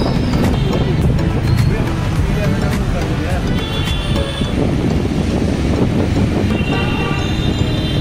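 Steady rumble of road traffic heard from a moving vehicle, mixed with music and voices.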